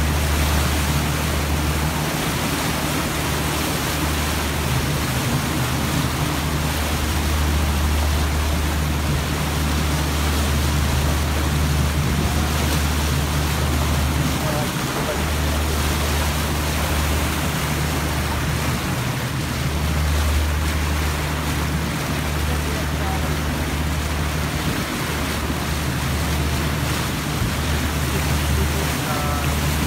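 A sightseeing boat's engine rumbling steadily as it cruises, with its wake churning and hissing behind the stern. Wind buffets the microphone, making the low rumble swell and dip.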